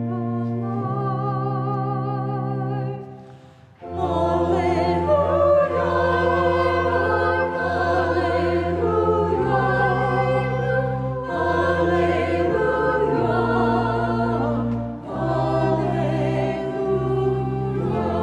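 Small mixed church choir singing together. A held chord fades out about three seconds in, then the full choir comes in strongly a second later and sings on over steady low notes, with a brief breath near the end.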